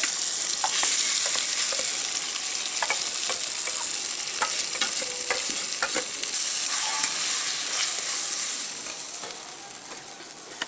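Ground green pea paste sizzling loudly as it hits hot oil in a metal kadai, with scattered clinks and scrapes of a steel bowl and spatula against the pan. The sizzle surges again about six seconds in and dies down near the end.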